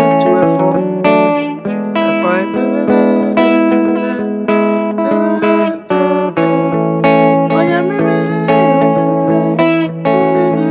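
Electric guitar plucking single-note melody lines and chord fragments, with several bent or slid notes and a brief pause about six seconds in.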